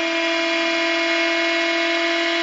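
Bedini-style transistor pulse motor running at high speed: its pulsed coils and spinning rotor give a steady whine with many overtones.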